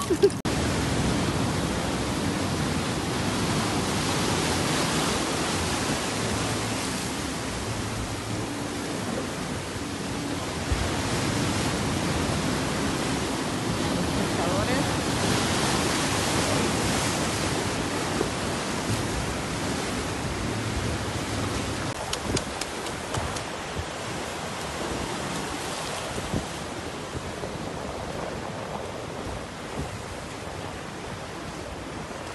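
Ocean surf breaking and churning against a rocky shore: a steady rushing noise that swells a few times and eases off near the end.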